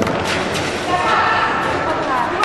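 A few sharp knocks of ice stocks striking on the ice in a hall, then voices of players calling from about a second in.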